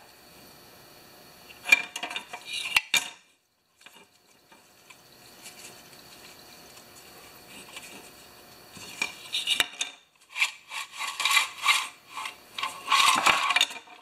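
Clicking and light rattling of a lawnmower recoil starter's plastic housing and pulley being worked by hand as the rewind spring is wound up: a short burst of clicks about two seconds in, and denser, irregular clicking over the last few seconds.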